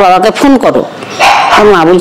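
A woman speaking Bengali in quick, broken phrases, with a breathy hiss partway through and the word "Ma" near the end.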